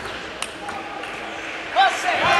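Table tennis ball clicking off bat and table, a sharp tick about half a second in and a fainter one soon after, then a short, loud shout near the end.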